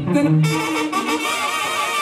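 A brass band playing a son, with saxophone and brass holding a sustained, slightly wavering melody.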